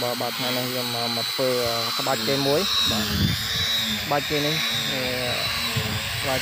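A person talking, with a steady high-pitched whine in the background.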